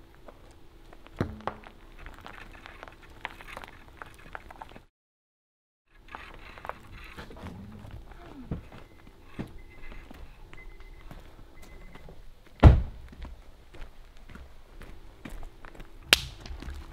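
Rope hauled hand over hand through a block-and-tackle pulley system on a vehicle: scattered light clicks and creaks, with one loud thump about three-quarters of the way through. The sound cuts out completely for about a second near five seconds in.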